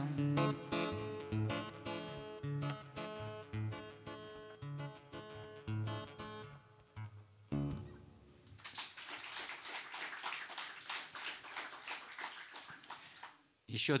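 Steel-string acoustic guitar playing the closing bars of a song, picked notes and a few bass strokes that thin out and fade by about halfway through. A single low thump follows, then about five seconds of audience clapping.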